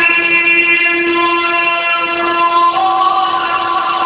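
A male Quran reciter's voice holding one long, steady chanted note in melodic tajwid recitation. The note steps to a new pitch about three seconds in.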